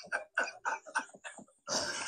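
A woman's quiet, breathy laughter in quick short pulses, about four or five a second, ending with a breathy gasp near the end.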